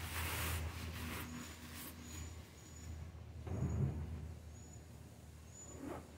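Faint, short high-pitched chirps of a small bird, repeating about once a second over a steady low hum, with a brief rustle near the start.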